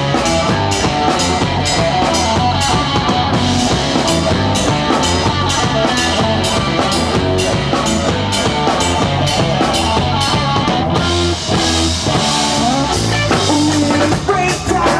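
Live rock band playing an instrumental passage: a drum kit keeping a steady beat under electric guitar and electric bass.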